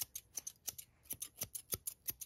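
Ashley Craig Art Deco thinning scissors with a ball-bearing pivot screw, worked open and shut in the air: a quick run of about a dozen light metallic snips, roughly six a second. The action is very smooth.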